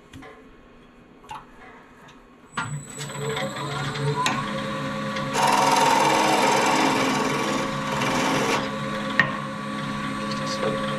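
A few faint clicks, then a wood lathe starts about two and a half seconds in, its motor whine rising as it spins up. From about five seconds in, a gouge cuts the spinning wooden bowl blank for about three seconds, the loudest part, and the lathe runs on after.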